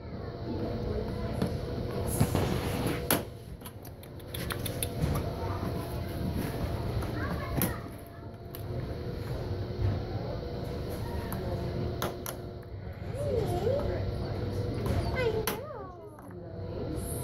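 Scissors snipping plastic zip ties off a pet carrier door, several sharp clicks spaced through, over a steady background of voices.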